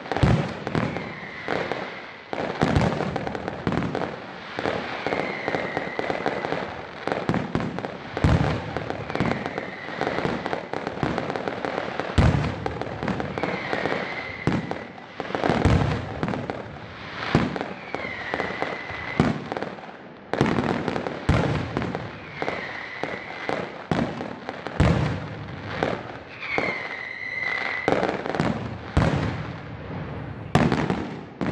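Fireworks display: aerial shells bursting in an irregular, continuous barrage of bangs over a steady hiss of crackle. A short high whistle recurs every four seconds or so.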